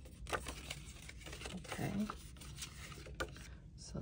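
Cut cardstock petal shapes rustling and flexing as they are handled and unfolded: a scatter of light crinkles and small clicks.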